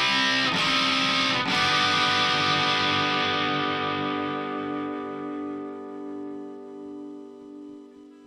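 Ibanez electric guitar playing a few chord strums, then a last chord struck about a second and a half in and left to ring, fading slowly away: the song's closing chord.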